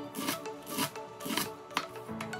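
Kitchen knife chopping vegetables on a cutting board: about four sharp strokes, roughly half a second apart, over background music.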